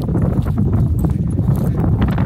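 Wind buffeting a phone's microphone as a steady low rumble, with the thud of footsteps as the person holding the phone walks across a field.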